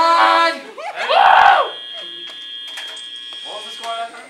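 Young people's voices calling out at the end of a robot match's countdown, with a loud shout about a second in, followed by a steady high-pitched tone that holds for about three seconds.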